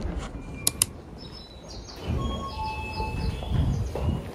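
Train-platform sounds: two sharp clicks just under a second in, then a string of short, steady high electronic tones at several pitches over low rumbling and footstep noise.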